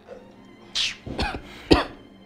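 A woman coughing in three short, hard bursts, the first breathy and the last the loudest, acted as the first sign that she has been poisoned by the food she tasted.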